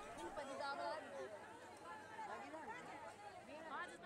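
A crowd of people talking and calling out at once, faint overlapping voices with no single clear speaker.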